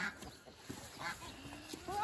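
Quiet outdoor background with a brief faint sound about a second in, then an animal call with a rising, bending pitch starting near the end.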